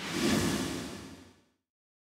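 A whoosh sound effect that swells at once and then fades out over about a second and a half, with a low rumble under the hiss.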